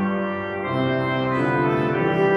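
Church pipe organ playing held chords, moving to a new chord about two-thirds of a second in and again near the end.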